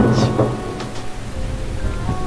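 A soundtrack bed of rain with a low thunder rumble, strongest in the first half second, under sustained held music notes.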